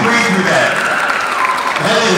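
Crowd applauding, with voices cheering and calling out over the clapping.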